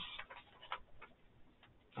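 A few faint, irregular clicks and ticks in a quiet room, the clearest about three-quarters of a second in.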